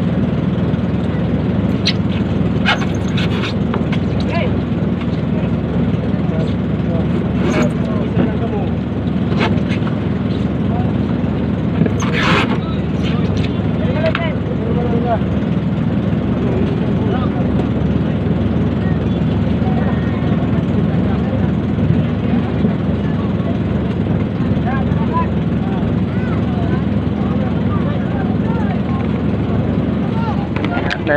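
A small engine running steadily with a low hum, under background voices and a few knocks and clatters near the start and about twelve seconds in.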